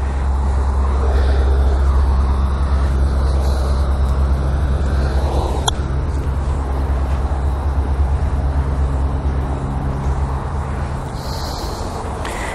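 A steady low engine hum runs through and fades out near the end. About halfway through comes a single sharp click of an iron striking a golf ball on a short pitch shot.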